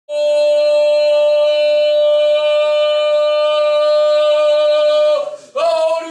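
A single voice holds one long, steady chanted note for about five seconds, then breaks off into short loud shouted calls near the end: the opening of a haka.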